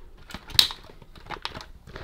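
Light plastic clicks and knocks as the spring-mounted inner assembly of a Dyson tower fan is worked onto its mounting points, with one sharper click about half a second in.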